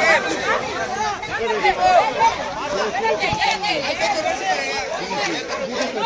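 Several people talking over one another, with overlapping voices throughout and no clear single speaker.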